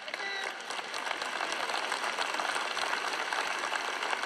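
Audience applauding, building up in the first second and then holding steady, with one short voice calling out near the start.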